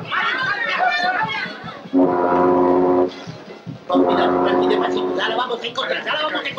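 A ship's whistle sounds two long, steady blasts, each about a second long, with the second starting about a second after the first ends. A crowd's chatter is heard before and between them.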